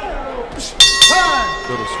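Boxing ring bell struck twice in quick succession, then ringing on with a long fading tone. It signals the end of the round.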